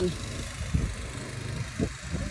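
A steady low hum with two short soft thuds, one near the middle and one near the end.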